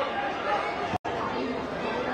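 Indistinct voices and chatter over match sound at a football game, cutting out for an instant about a second in.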